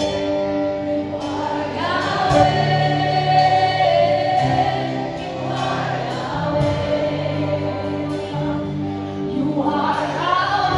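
Live worship band playing a gospel song, with several voices singing together over held chords and a moving bass line.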